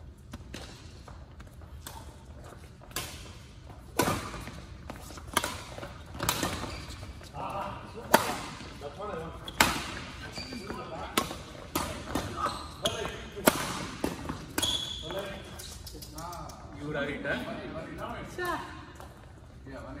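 A badminton rally: badminton rackets striking a shuttlecock in a quick, irregular series of sharp cracks, from about three seconds in until about fifteen seconds in. Voices follow near the end.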